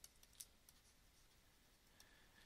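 Near silence: room tone, with a couple of faint ticks from a stylus on a drawing tablet as handwriting goes on.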